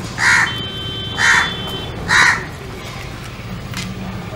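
A crow cawing three times, about a second apart, over a steady low background rumble.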